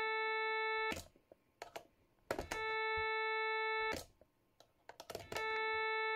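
A steady sawtooth test tone playing through a summing mixer, cutting out twice for about a second and a half and coming back, as its jack cable is unplugged and plugged back in. Short clicks and crackles from the jack plugs sound in the gaps.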